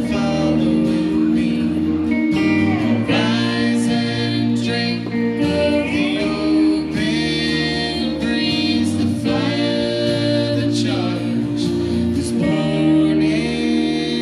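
Live folk-rock band: strummed acoustic guitars and an electric guitar playing under a man and a woman singing.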